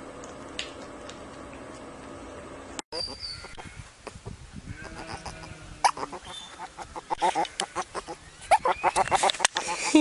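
A young otter chirping and squeaking in quick, short, high calls that grow loud and dense over the last few seconds. Before that, a steady low hum runs for about three seconds and cuts off suddenly.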